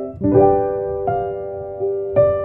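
Slow, soft solo piano music: single notes and chords struck one after another and left to ring and fade, with a new note about every half second to second.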